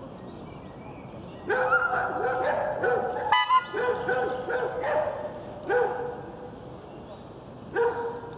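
A dog barking: a quick run of barks for about three and a half seconds, then two single barks near the end.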